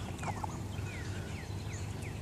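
Young ducks peeping: a run of short, falling, whistle-like peeps, about three a second, over a low steady outdoor rumble.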